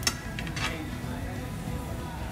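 A metal fork clinking against a plate: one sharp clink just after the start, then two lighter ones within the first second.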